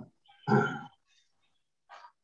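A single short spoken "yeah" from a participant on a video call.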